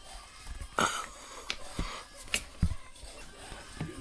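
Quiet handling noise of plush toys being moved about: scattered soft clicks and taps, with one short breathy hiss about a second in.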